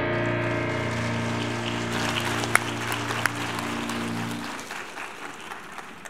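The last chord of a Steinway grand piano ringing out and dying away. Audience applause starts about two seconds in and fades near the end.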